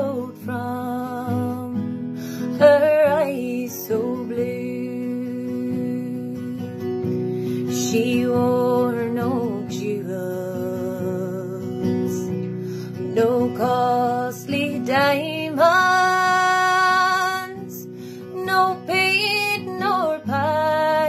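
A woman singing a slow Irish folk ballad, accompanied by her own acoustic guitar, with a long held note a few seconds before the end.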